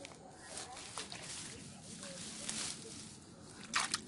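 Grass and dry stalks rustling and brushing as someone pushes through streamside vegetation on foot, in scattered soft swishes, with a louder rustle near the end.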